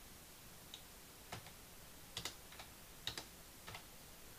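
A handful of faint computer keyboard clicks, single keystrokes at uneven intervals, as text is cleared in an editing dialog.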